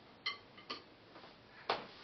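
Light wooden clicks of a rhythm stick being handled and set down: two small clicks about half a second apart, then a sharper knock near the end.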